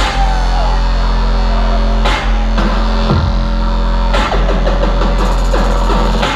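Loud, bass-heavy electronic dance music played live over a venue's sound system, with a deep sustained sub-bass and a few sharp hits.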